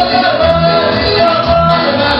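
A man singing into an amplified microphone over loud backing music, part of a medley of sung choruses, with a bass note repeating about twice a second and light percussion ticks.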